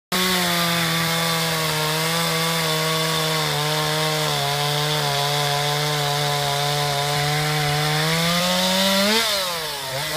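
Chainsaw running steadily as it carves into the wood of a large sculpture, its pitch sagging a little through the middle and climbing back. Near the end the engine revs up and down in quick swings.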